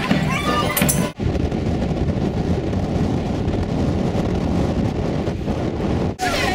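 A folk band of accordions and penny whistles plays for about the first second and is cut off abruptly. The steady, loud noise of surf breaking on a sandy beach follows, heavy in the low end.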